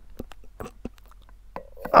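Spiral reamer from a tire plug kit being forced by hand into a puncture in a motorcycle tire's tread: faint, scattered clicks and scrapes of steel working into rubber, then a short strained grunt near the end.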